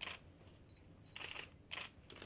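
Camera shutters firing in quick bursts: one at the start, a longer rapid run a little over a second in, and another short burst just before the end.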